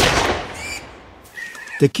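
A single pistol shot: a sharp crack with a reverberating tail that dies away over about a second.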